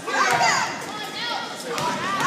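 Indistinct high-pitched shouts and calls from children in a crowded school gym, with the hall's echo and no clear words; the loudest shouts come about a quarter second in and again near the end.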